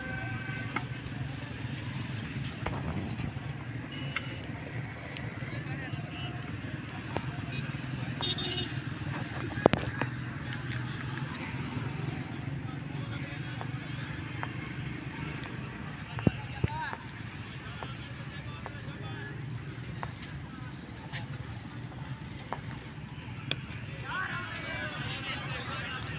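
GE U20C diesel-electric locomotive running with a steady low engine rumble while shunting, with a couple of sharp clicks partway through.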